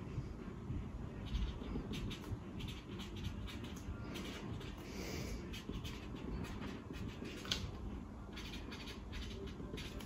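Faint, irregular scratching of a felt-tip marker writing on paper over steady low room noise.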